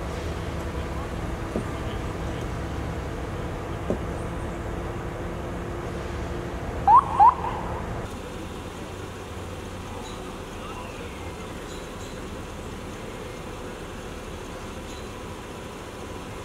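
Steady low hum of stopped vehicles' engines running, with two short, loud rising chirps about seven seconds in. About eight seconds in, the sound cuts to a quieter, even background from the roadway.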